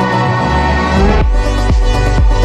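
Electronic dance music from a DJ set: over steady synth tones the kick drum is briefly dropped, a short rising sweep plays, and the four-on-the-floor kick comes back in about a second in, at about two beats a second.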